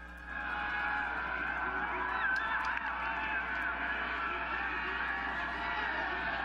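Football stadium crowd yelling and cheering, swelling suddenly about a third of a second in and staying loud, over faint music.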